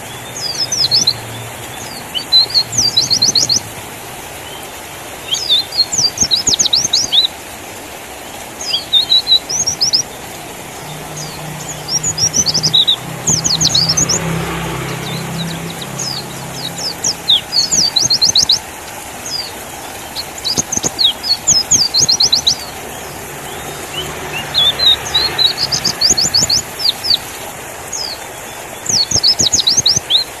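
White-eye (pleci) singing: bursts of rapid, very high twittering notes, each phrase about a second long, repeating every couple of seconds with short pauses between.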